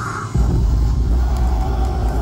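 Live death-metal band at the end of a song: the full band drops away and a loud, steady low rumble from the bass and amplifiers rings on.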